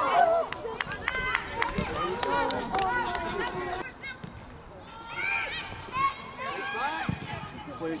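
Players shouting and calling to each other on a football pitch, high-pitched and short, with a few sharp thuds of the ball being kicked. The sound drops abruptly about four seconds in, at an edit.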